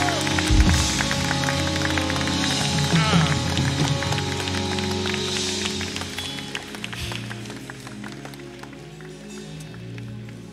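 A worship band plays soft sustained music while the congregation claps and voices call out about three seconds in. The clapping and music ease off over the second half.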